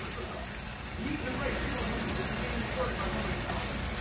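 Chunks of steak meat sizzling steadily in a frying pan as they brown.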